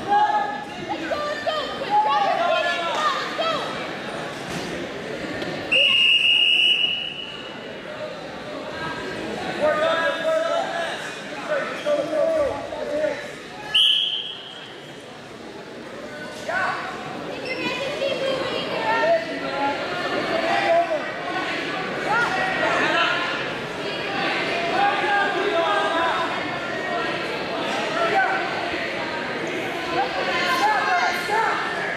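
Chattering voices of coaches and spectators in a gym, with two shrill referee whistle blasts: a long one about six seconds in and a shorter one at about fourteen seconds.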